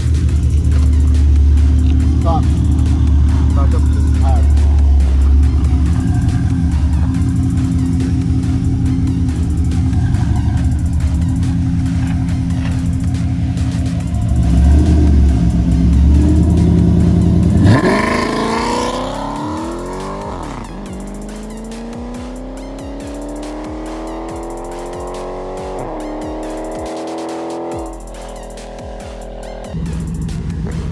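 V8 muscle car engine held loud at high revs, then launching hard about 18 seconds in with a sharp jump in pitch. It pulls away through two upshifts, the pitch climbing and dropping at each gear change, and fades into the distance.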